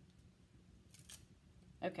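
A brief, soft rustle about a second in as a clear stamp on its acrylic block is lifted off the cardstock and the paper is handled, over a faint low hum.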